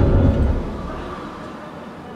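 A deep rumble that fades away over about the first second.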